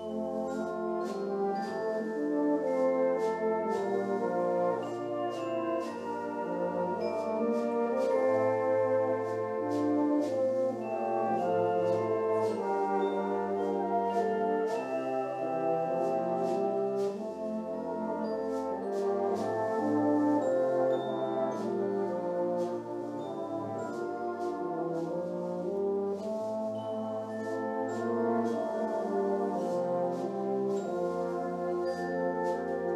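Brass band accompanying a euphonium and cornet duet, playing a slow, sustained melody over held chords.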